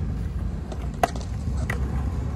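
Skateboard wheels rolling over concrete, a steady low rumble, with one sharp click about a second in.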